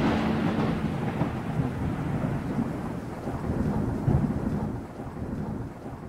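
Thunder rumbling over steady rain, slowly dying away, with a second swell of rumble about four seconds in.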